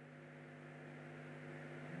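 Faint, steady electrical hum from the microphone and sound system.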